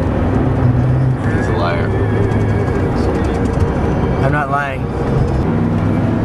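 Steady engine and road hum inside a moving car's cabin, with two short vocal sounds, about a second and a half in and again near four and a half seconds.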